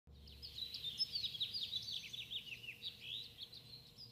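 Birds chirping in a busy chorus of quick, mostly falling calls, thinning out near the end.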